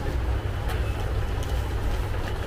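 A steady low rumble of background noise, with a few faint rustles of silk sarees being handled.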